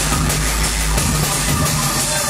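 Drum and bass from a DJ set played loud over a club sound system, with a heavy, steady bass.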